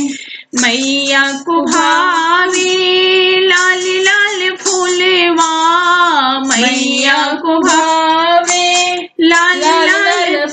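A high voice singing a Hindi devi geet (Navratri devotional song) in long, drawn-out held notes with ornamented, wavering pitch, with two short breaths, one about half a second in and one near the end.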